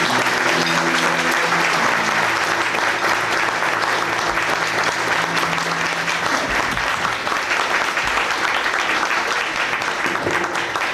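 Audience applauding steadily after a choir's song, with a few faint low steady tones fading out about two-thirds of the way through.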